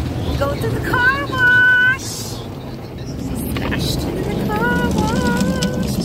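Automatic car wash heard from inside the car: a steady low rumble of the wash machinery, with a brief hiss of spray. Over it, a high-pitched voice makes drawn-out sounds twice, about a second in and again near the end.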